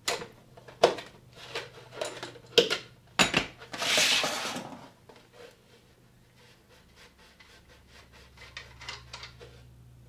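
Open-end wrench clicking and knocking against the oil tank drain plug of a Harley-Davidson Ironhead Sportster as the plug is loosened, with a plastic jug rubbing beneath it. A louder rasping burst about four seconds in, then a run of fainter quick ticks.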